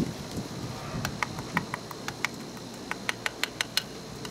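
Metal spoon clinking and scraping against a speckled enamelware bowl while stirring a thick marinade: a string of small, irregular clicks that come faster near the end.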